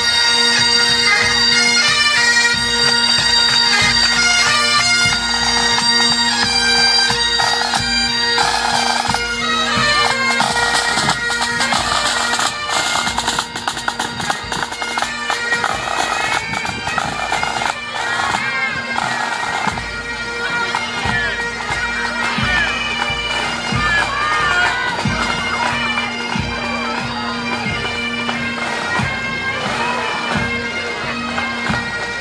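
Pipe band playing: several bagpipes sounding steady drones under the melody, with drum strokes beating along. The band grows somewhat fainter about halfway through.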